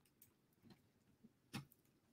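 Near silence with a few faint, short clicks from a computer mouse, the clearest about one and a half seconds in.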